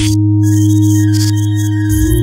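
Experimental electronic music: a steady, loud low synthesizer drone with a sustained higher tone held over it, joined about half a second in by short bursts of high hiss repeating in an uneven pattern.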